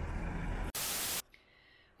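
A low rumble, then about three quarters of a second in a loud burst of hissing static lasting about half a second, which cuts off suddenly into near quiet.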